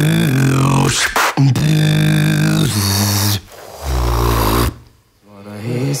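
Beatboxer's lip oscillation: the lips buzz at a clear pitch, playing a run of held low notes that shift in pitch, cut by a couple of sharp clicks. The notes stop briefly about five seconds in.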